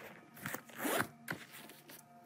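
A zipper pulled in a couple of quick scratchy strokes about half a second and one second in, followed by a short click.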